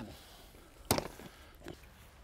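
A single sharp click about a second in.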